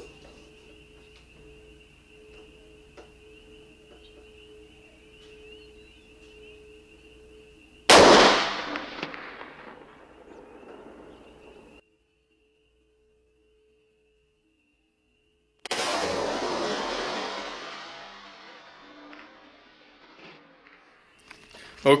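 A single rifle shot from a .300 Winchester Magnum bolt-action rifle (Savage 110BA) fired from inside a room, a very loud crack about eight seconds in whose report dies away over a few seconds. After a few seconds of dead silence, a second loud report-like sound sets in suddenly and fades away more slowly.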